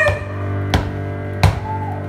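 Live keyboard music: a sustained low piano chord with a sharp percussive knock keeping time about every 0.7 seconds, and a short, quiet sung note between the knocks.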